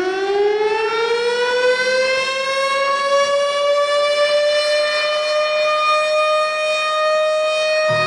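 A siren wail that rises in pitch over the first few seconds, then holds a steady tone.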